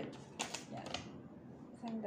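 Paper banknote rustling and crinkling as it is handled and pulled flat between the hands, with a few sharp crackles about half a second and a second in.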